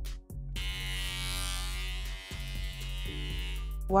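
Background music, joined from about half a second in by the steady buzz of an electric hair clipper, which stops just before the end.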